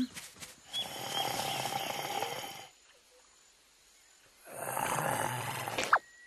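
A large cartoon animal sound effect: two long snore-like growls, each about two seconds, with a pause of near silence between them, then a short click near the end.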